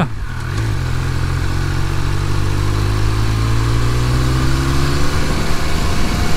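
Triumph Speed Triple 1200 RS's inline three-cylinder engine pulling steadily under light throttle, its pitch rising slowly as the bike gathers speed.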